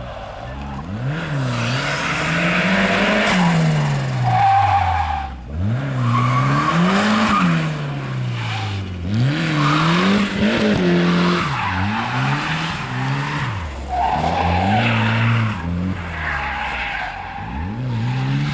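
Cosworth RS2000 autotest car driven hard: its engine revs climb and drop about six times, with tyres squealing and skidding through the tight turns.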